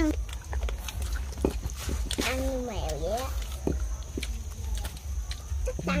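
Small scattered clicks and crunches of people eating grilled chicken feet by hand, with one short rising-and-falling call about two seconds in and a steady low rumble underneath.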